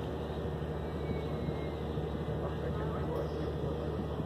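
A river ferry's engine running under way with a steady low drone, with faint voices in the background.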